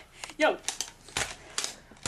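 A short shout of "yo", then several light clicks and knocks scattered over the next second or so.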